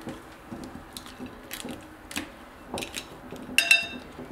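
A metal flower cookie cutter being pushed down through a slice of pineapple in a glass bowl: scattered small clicks and knocks, then a brief ringing clink of metal against the glass near the end.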